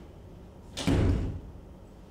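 A door slamming shut once, a little under a second in, with a heavy low thud that dies away quickly.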